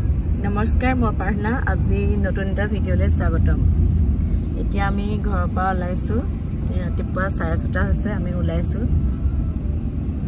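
Steady low rumble of a car's cabin on the move, road and engine noise under a woman talking.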